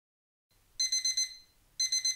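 Electronic alarm clock beeping: a quick run of high beeps about three-quarters of a second in, a short pause, then another run near the end.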